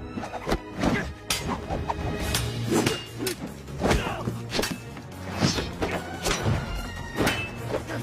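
Film fight-scene soundtrack: music under a quick series of sharp strikes and thuds, staff blows and hits landing several times a second.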